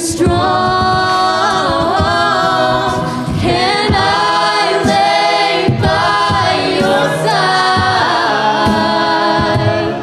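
Mixed-voice a cappella group singing held chords in close harmony, the chords shifting every couple of seconds.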